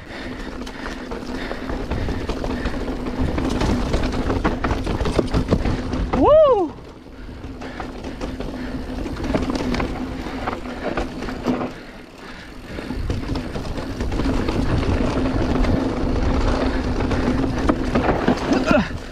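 Mountain bike rolling fast down a dry dirt trail: continuous tyre, trail and wind noise on the bike-mounted microphone, with a steady low hum under it. About six seconds in there is one short rising-and-falling whoop.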